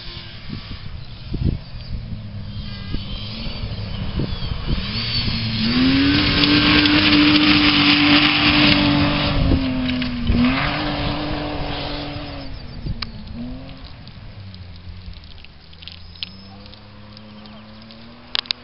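Rally car at speed on a gravel stage: its engine at high revs grows louder as it approaches, loudest about six to ten seconds in with gravel spraying from the tyres, the engine note dipping briefly around ten seconds in as it slides through the corner, then fading as it drives away.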